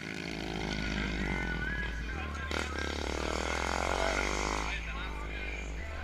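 Motorcycle engine running close by, its pitch rising and falling as it is revved, with people talking in the background.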